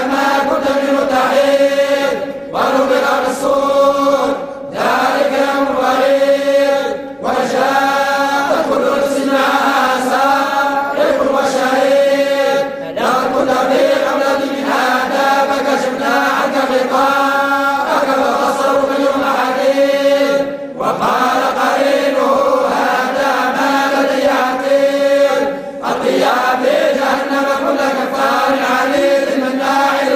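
Group of men reciting the Quran aloud together in unison, in the Moroccan collective hizb style (tahazzabt), on a sustained chanted melodic line. Short breaks come every few seconds before the next phrase.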